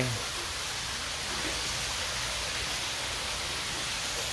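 Steady rushing of water from a courtyard waterfall feature.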